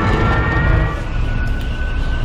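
Film sound effects of a stricken military transport plane in a dive: a heavy low rumble with a thin, high whine that slowly falls in pitch.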